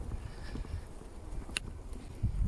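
Uneven low rumble of walking on grass with a handheld camera, with one sharp click about one and a half seconds in.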